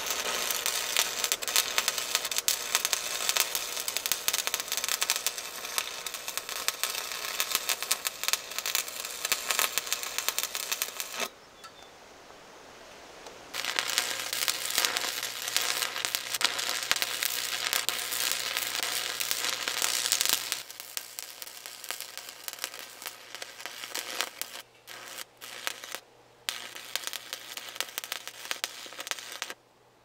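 Stick (arc) welder crackling and sizzling as beads are run on steel plate. The crackle drops out for about two seconds around eleven seconds in, then resumes. After about twenty seconds it goes on quieter, with short breaks.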